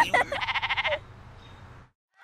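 A cartoon sheep bleating: one quavering 'baa' of under a second, just after a short burst of a child's laughter at the start. Then only a faint hum, cutting to silence near the end.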